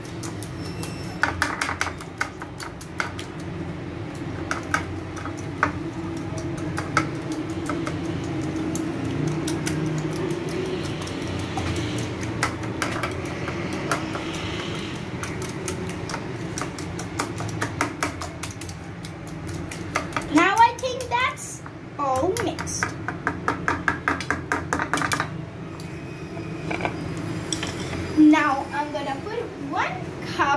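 Wire whisk beating egg and sugar in a bowl, its tines clicking quickly and unevenly against the sides. A child's voice comes in briefly about two-thirds of the way through.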